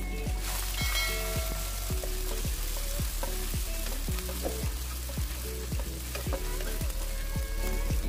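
Chopped shallots and garlic sizzling in hot oil in a nonstick wok while a spatula stirs them, over background music with a steady beat of about two low thumps a second.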